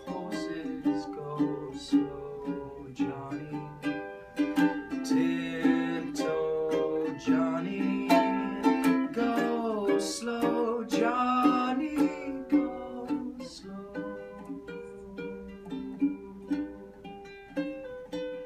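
Ukulele strummed in a steady rhythm, with a man's voice singing long, gliding notes over it through the middle. Near the end the ukulele plays on alone.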